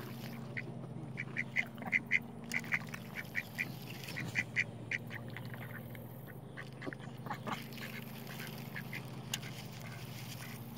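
Mallard-type ducks giving short, quick calls in rapid runs, thickest in the first half and sparser later, over a low steady hum.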